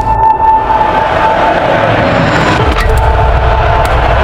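Film soundtrack: a held high tone over a dense, rumbling noise bed.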